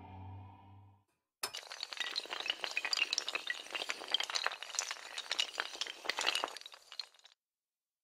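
Animation sound effect of a chain of hard tiles toppling: a dense, rapid clatter of glassy clicks and clinks that starts suddenly about a second and a half in and cuts off near the end. A low held musical chord fades out in the first second.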